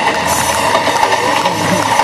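A man's voice imitating a train running, a continuous rushing, rattling sound like a train pulling away.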